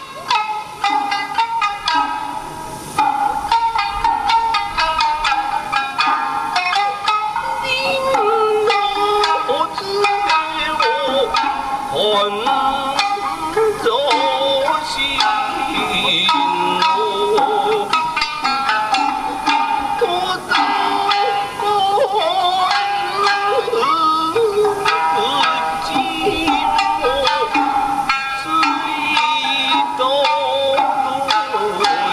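Traditional Japanese dance music: a voice sings a drawn-out, wavering melody over instrumental accompaniment, playing without a break.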